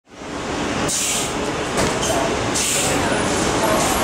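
Steady curbside traffic noise with a large vehicle's engine running close by, broken by several short hisses.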